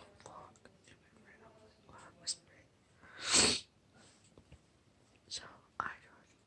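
A woman's soft whispering and breathing close to the microphone, with one loud, breathy burst of air lasting about half a second, three seconds in.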